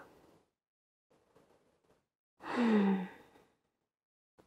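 A woman's audible sigh while hanging in a ragdoll forward fold: one breathy exhale with a little voice in it, pitch falling slightly, about two and a half seconds in and lasting under a second.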